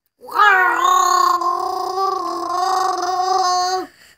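A young boy imitating Chewbacca's Wookiee roar with his voice. It is one long call held for about three and a half seconds, dipping in pitch at the start, then steady, and cutting off just before the end.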